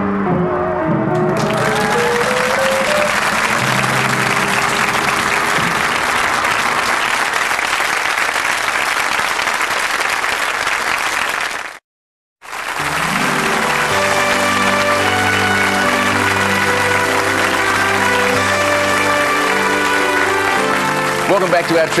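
A live 1960s pop song ends and a crowd breaks into loud cheering and applause. After a brief dead silence about halfway through, a band plays sustained chords over continuing audience applause.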